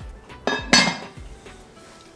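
A sharp clink of the enamelled cast-iron casserole dish and its lid, with a brief ring, a little under a second in, over background music.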